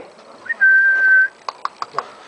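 A person whistles one steady, high note for under a second to call the puppy, followed by a few quick clicks.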